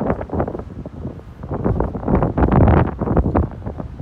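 Wind buffeting the microphone in uneven gusts, louder through the middle of the clip.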